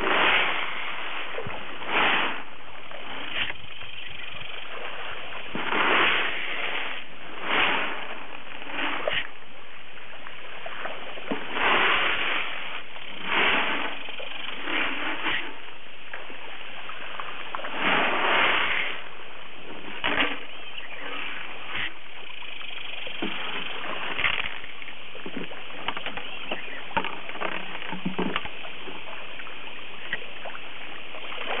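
Channel catfish splashing at the pond surface as they take floating fish food: irregular splashes every second or two, thinning out to a few small, sharp plops over the last several seconds.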